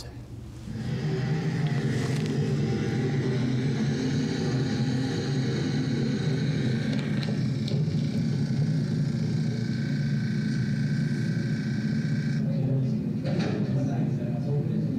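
Steady low mechanical hum, like a running fan or motor, heard through the lecture room's speakers from the demonstration video. A faint high whine joins about eight seconds in and cuts off about a second and a half before the end.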